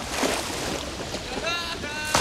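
Rushing river whitewater with splashing as people wade and flounder through it. About one and a half seconds in, a short high-pitched yell rises over the water.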